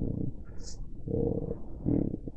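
A man's voice, quiet and murmured: a drawn-out hesitation sound with a short soft hiss about two-thirds of a second in.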